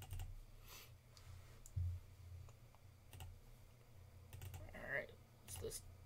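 Faint, scattered computer keyboard and mouse clicks, with a soft low thump about two seconds in.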